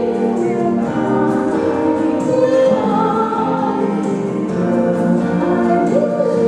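Live acoustic song: a woman singing held notes with vibrato over acoustic guitar, amplified through a PA.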